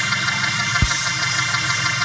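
Organ holding a steady sustained chord, with a single low thump a little under a second in.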